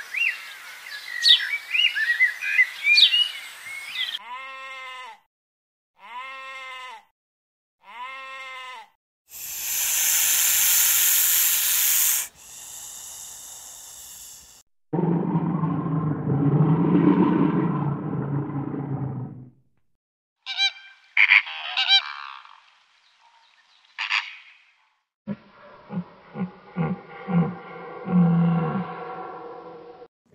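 A run of different animal calls, one after another with short gaps: high bird chirps for the first few seconds, then three drawn-out bleat-like calls, a loud hissing burst, a low rough call from brown bears tussling in water, then short clicky calls and more low calls near the end.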